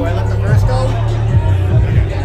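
Loud, bass-heavy electronic dance music from a DJ set over a club sound system, dominated by a deep, heavy bass line, with a man's voice talking close to the microphone over it.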